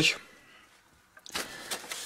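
A sheet of printer paper rustling as it is picked up from an open cardboard box, starting about a second in with a short, sharp rustle and then softer handling noise.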